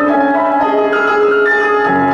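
Grand piano played in a classical concert piece, with overlapping held notes moving step by step; deeper bass notes come in near the end.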